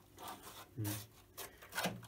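A rigid fibreglass mould shell being handled and pulled against the silicone and the bench: a few short dry scrapes and rubs.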